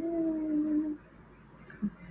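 Speech: a woman drawing out "so anyway" into a long sung-out note that rises in pitch and then holds for about a second. Then a single short word near the end.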